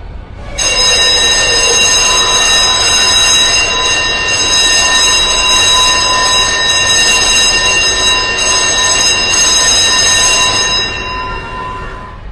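Electric school bell ringing: a loud, harsh, continuous ring that starts about half a second in and fades out near the end.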